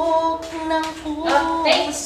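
A woman singing unaccompanied, holding long notes that slide from one pitch to the next.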